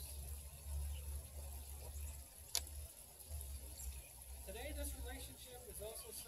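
Faint murmured voices and a low, uneven rumble on the microphone, with one sharp click about two and a half seconds in.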